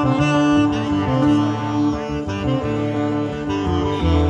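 Live saxophone playing a melodic run of held notes over a small band's guitar accompaniment.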